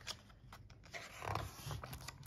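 Page of a hardcover picture book being turned by hand: faint paper rustling and small clicks, with a soft swish a little past the middle.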